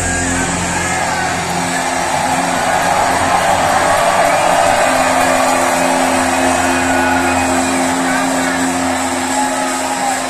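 Stadium crowd cheering and shouting as a live heavy-metal song ends. The band's low sustained notes die away about two seconds in, and a steady low tone holds underneath through the second half.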